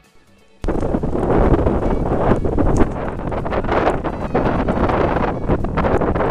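Strong wind buffeting the camera's microphone, a loud rough rushing that rises and falls in gusts. It starts abruptly less than a second in, as the camcorder's own sound cuts in.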